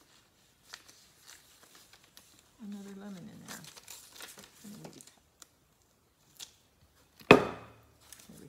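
Rub-on transfer backing sheet being peeled and handled, giving light crinkling and rustling with small ticks. A loud knock on the worktable comes near the end.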